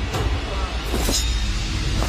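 Film fight-scene soundtrack: a low steady rumble with a sudden hit about a second in.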